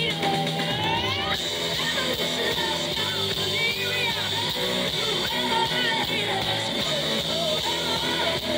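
Live rock band playing, with two electric guitars over bass and drums, heard through a concert PA. Bending lead lines rise and fall above the steady rhythm section.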